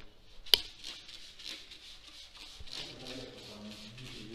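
Hand trigger spray bottle squeezed over and over, giving short repeated hisses of cleaner spray onto a car radiator, with one sharp click about half a second in.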